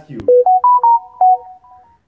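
A phone's electronic ringtone melody: a click, then a quick run of bell-like notes that climbs and then settles, lasting about a second and a half.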